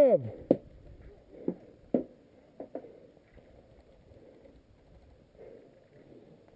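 A few scattered, sharp clicks and knocks at irregular intervals over a faint rustling, mostly in the first three seconds.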